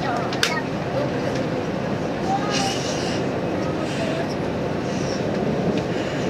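Running noise heard inside the car of a JR Hokkaido 789 series electric express train: a steady rumble of wheels on rail, with a sharp click about half a second in.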